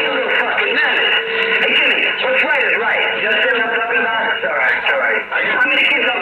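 CB radio receiving skip on 27.385 MHz lower sideband: distant stations' voices, thin and cut off at the top and bottom, with a steady whistle tone for about the first second and a half.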